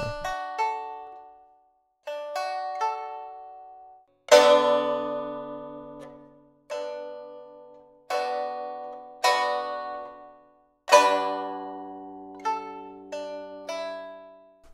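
Sampled pipa (Chinese lute) from a Kontakt virtual instrument, played from a keyboard: short phrases of plucked notes and low chords, each note ringing out and dying away.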